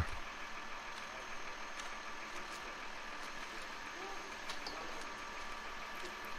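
Faint, steady hum of a heavy truck engine running at idle on a concrete job site, likely the concrete pump truck.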